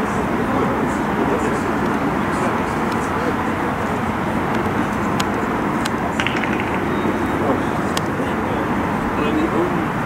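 Open-air football pitch ambience: a steady rush of noise with distant voices, and a few sharp taps of a football being kicked.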